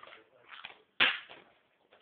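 A single sharp knock about a second in, fading quickly, with faint rustling before it.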